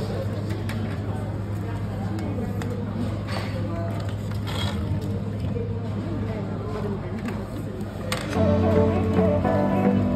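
Shop ambience: a steady low hum with faint background voices, then music comes in about eight seconds in and carries on louder.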